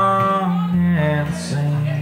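Live country song: a man singing, holding a note at the start and then moving on to the next phrase, over a strummed acoustic guitar.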